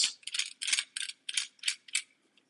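Fastener being spun by hand onto the threaded post of a Thule Evo Flush Rail roof-rack foot, giving a quick run of light ratcheting clicks, about five or six a second.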